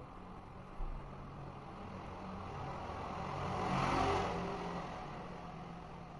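A road vehicle passing by, its noise swelling to a peak about four seconds in and then fading away.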